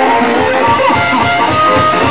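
A live blues band playing loud music led by guitar, with some notes bending up and down in pitch about half a second to a second in.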